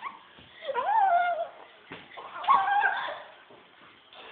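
Two high, wavering vocal cries, each about a second long. The first comes about half a second in and the second about two and a half seconds in.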